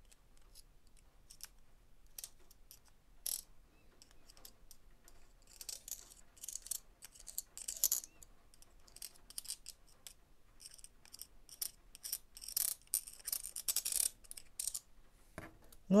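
Small brush working grease onto the internal ring gear of a cordless drill's planetary gearbox: short, dry scratching strokes with scattered light clicks, busiest in the second half.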